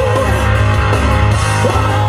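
Rock song playing, with guitar and singing.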